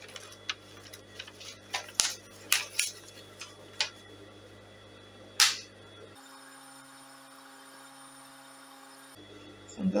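Scattered sharp clicks and light taps from handling fabric and the bodice at a sewing machine, over a low steady hum; the machine itself is not stitching. About six seconds in the sound cuts abruptly to a different steady hum for about three seconds.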